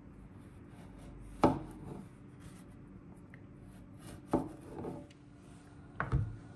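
Serrated knife cutting through a baked chocolate cookie on a wooden cutting board: two sharp knocks as the blade comes down on the board, about three seconds apart, each followed by softer scraping, over a steady low hum.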